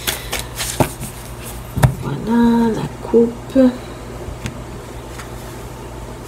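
A few sharp clicks of tarot cards being handled, then a woman's drawn-out 'hmm' a couple of seconds in, followed by a couple of short murmurs.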